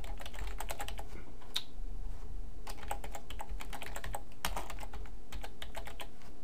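Typing on a computer keyboard: several quick runs of key clicks with short pauses between them.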